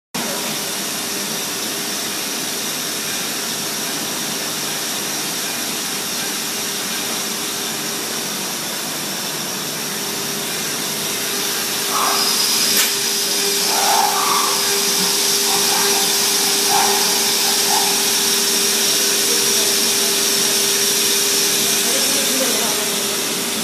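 CNC machining centre milling a curved metal surface through a Nikken Pibomulti speed-increaser head: a steady machine whine with a high tone over it. About halfway through it grows a little louder and a second high tone joins.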